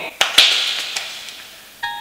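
Two sharp hits in quick succession, then a hissing, cymbal-like crash that fades over about a second and a half while the backing music drops out. The music comes back in near the end.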